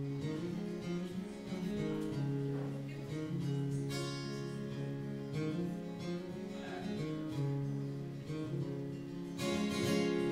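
Solo acoustic guitar playing a song's instrumental intro, its chords strummed and left to ring, with stronger strums about four seconds in and near the end.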